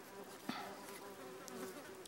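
Hornets buzzing around, a faint steady drone. A short tick sounds about half a second in.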